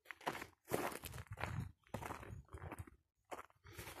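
Footsteps walking at a steady pace on a dry dirt and grass track, a crunch roughly every two-thirds of a second.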